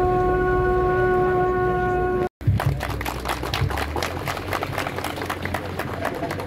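A loud pitched tone slides up and then holds steady for about two seconds before cutting off abruptly. After it comes a rapid, irregular patter of sharp clicks.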